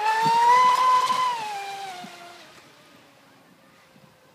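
Radio-controlled speedboat's motor whining at speed as it passes close by: the pitch rises a little, then drops and fades as the boat runs off into the distance.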